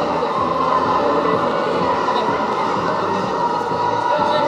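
Steady rumbling din of roller skate wheels on a sports-hall floor, mixed with crowd noise echoing in the hall.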